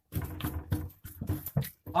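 Indistinct men's talk in short, low bursts, with no clear words.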